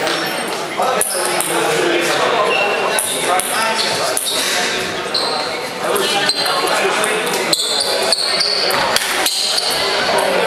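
Indistinct chatter of several people echoing in a large tiled hall, with scattered sharp clicks and knocks throughout.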